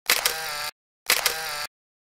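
Camera shutter sound effect, twice about a second apart: each a sharp click followed by a short steady whirr.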